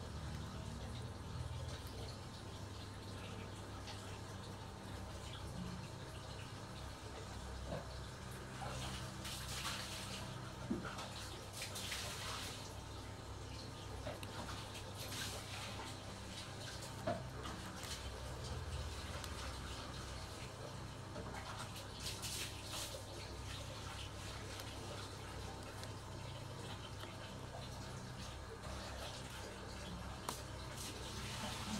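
Soft rustling of paper and string as string is drawn through holes in paper flower cutouts, with a few light clicks, over a steady low hum.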